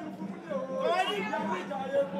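Several people's voices talking and calling out together, over a steady low hum.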